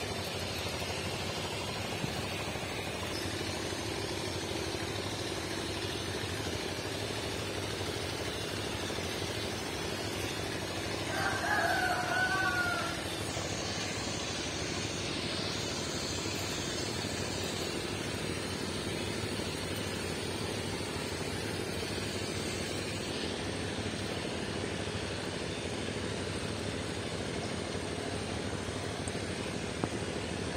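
Steady outdoor background noise, with a rooster crowing once about eleven seconds in, for roughly two seconds.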